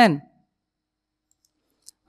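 A man's voice finishing a word, then more than a second of dead silence, then one short, faint click just before he speaks again.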